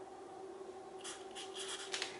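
Black felt-tip marker writing on paper: faint rubbing strokes of the tip, a few quick ones from about a second in.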